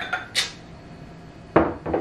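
Glassware clinking on a kitchen counter as a glass measuring cup is set down beside a jar of juice: a short light clink, then a louder knock about one and a half seconds in.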